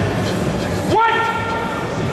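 Steady hall noise, then about a second in a single loud, steady, high-pitched held call lasting under a second, rising briefly in pitch at its start.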